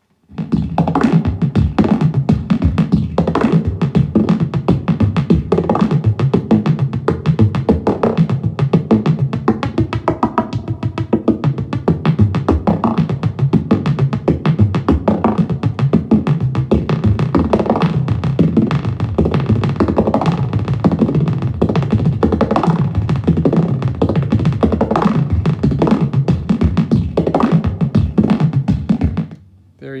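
Buchla 200 modular synthesizer patch: a 259 oscillator through a 292 low-pass gate feeds a 277r delay with feedback, whose delay time is swept by the MARF sequencer's stepped voltage, giving a fast, dense stream of drum-like hits. It stops about a second before the end.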